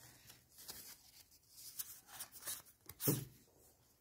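Trading cards being handled and slid over a playmat: faint, scattered rustles and light taps.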